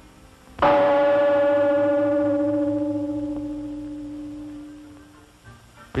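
A single gong stroke about half a second in, ringing on one steady pitch and fading away over about five seconds.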